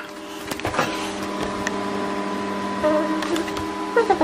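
Cookworks microwave oven running mid-cycle: a steady electrical hum.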